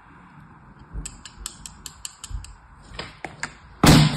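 Quick, sharp plastic clicks and taps as a plastic sand mold and a small knife are handled over a plastic tray of kinetic sand, with one loud knock near the end.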